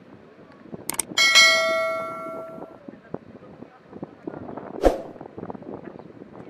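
A click, then a bright bell ding that rings out for about a second and a half: a subscribe-button notification sound effect. A sharp knock comes near the end, over steady outdoor background noise.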